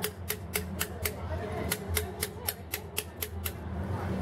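Hand chisel struck with a hammer, cutting into stone: a steady run of sharp taps about four a second.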